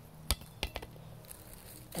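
Two short, sharp knocks about a third of a second apart, a weaker one just after, over a faint steady hum.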